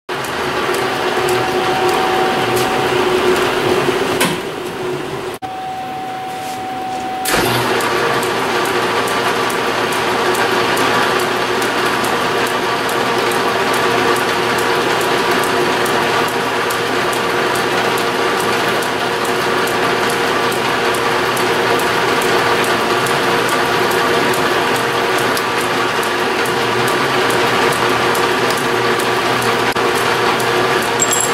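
Hamilton metal lathe running under power, its gear drive giving a steady whine and clatter, while a small drill bit in the tailstock chuck bores through the spinning steel hex stock. The noise drops for about three seconds a little after four seconds in, then comes back at full level.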